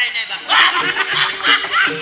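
Loud laughter breaking out about half a second in and going on in repeated bursts, over background music with held notes.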